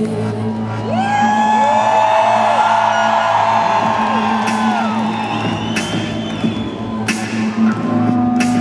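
Live arena rock performance: a steady low bass drone under a long held sung note that slides up about a second in and holds for about four seconds. A few sharp hits come near the end as the band builds toward the guitar part.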